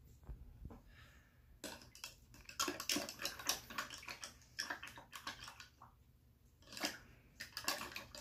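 A paintbrush stirred and tapped in a cup of rinse water: a run of quick small splashes and clicks, busiest in the middle and again near the end.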